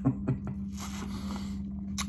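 A man drinking from a glass bottle: a few small swallowing clicks, then about a second of breathy noise, over a steady low hum. A sharp click comes at the very end.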